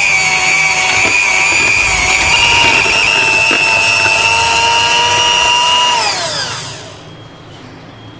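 Philips electric hand mixer running at a steady speed, its beaters creaming butter and powdered sugar in a steel bowl. The motor's whine holds one pitch, then falls away as it is switched off about six seconds in.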